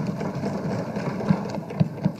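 Assembly members thumping their desks in applause: a dense, continuous rapid drumming.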